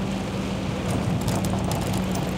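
Inside a Volvo truck's cab in heavy rain: the diesel engine drones steadily under a hiss of rain and wet road, with scattered ticks of raindrops on the windshield.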